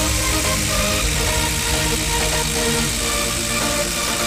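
Milwaukee M12 impact driver hammering steadily as it drives a long screw into a wooden stump. Electronic music plays alongside.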